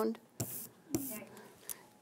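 Rubber brayer rolled twice over a freshly inked linoleum block, each stroke a short tacky pulling sound. That sticky pull is the sign of the right amount of ink on the brayer, neither dry-sounding nor squishy.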